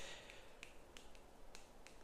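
Faint short clicks and squeaks of a dry-erase marker tip on a whiteboard as a few letters are written, about half a dozen strokes.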